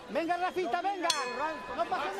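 A man talking, with a single metallic ding about a second in that rings on briefly: the boxing ring bell.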